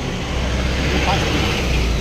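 A motor vehicle's engine running with a low, steady rumble that grows a little louder near the end.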